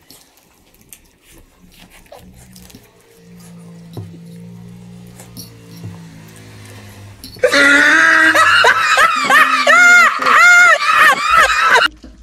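Faint low sustained music notes, then about seven and a half seconds in a loud music clip with a wailing voice cuts in, its pitch rising and falling in repeated arches, and stops abruptly near the end.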